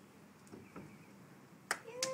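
Mostly faint background with a couple of soft knocks, then one sharp slap-like snap near the end, followed at once by a voice.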